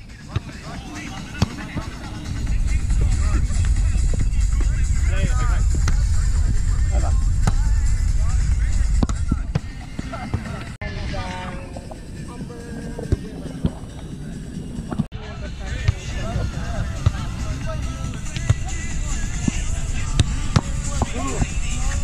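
Outdoor volleyball-game ambience: voices and music in the background over a low rumble, with a few sharp smacks of the ball being played. The sound breaks off abruptly twice in the middle, at edits.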